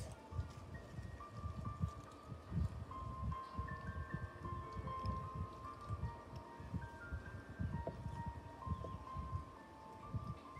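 Slow background music, a melody of single held notes, over irregular low rumbling and knocking from gloved hands handling a utility knife and flower on a plastic cutting board.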